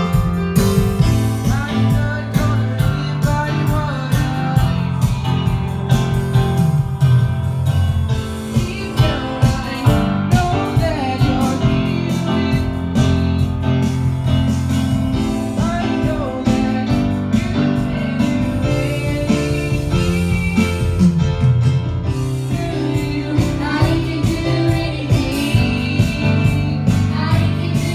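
A live band playing a song: a girl's voice singing into a microphone, starting about two seconds in, over electric guitar and keyboard with a steady beat.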